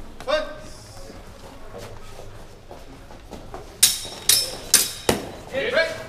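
Steel training longswords clashing four times in quick succession during a sparring exchange, each strike a sharp clang with a brief metallic ring, the last one heavier.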